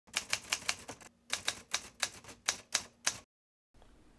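A run of sharp mechanical clicks like typewriter keystrokes, about four or five a second, with a short break about a second in; they stop a little past three seconds in.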